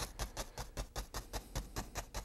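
A small round paintbrush tapped rapidly against a stretched canvas, about seven soft, even taps a second, dabbing in a tree shape.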